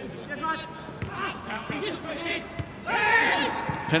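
Footballers shouting to each other on the pitch with no crowd noise, the loudest a held shout about three seconds in, with a few dull thuds of the ball being kicked.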